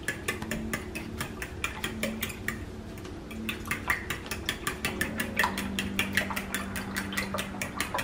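A metal fork whisking eggs and milk in a glass bowl, clicking against the glass in a fast, even rhythm of about six strokes a second.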